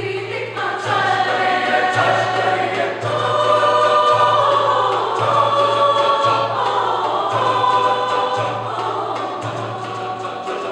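Mixed choir singing in several parts, with sustained upper voices over a low note that restarts about once a second.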